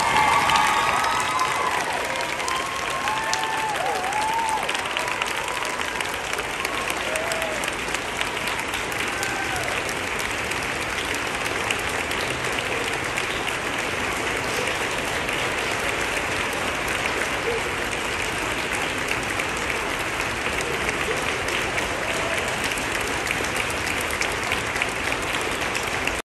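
A large audience of students clapping and cheering, loudest at the start with a few shouts and whoops in the first few seconds, then settling into long, steady applause.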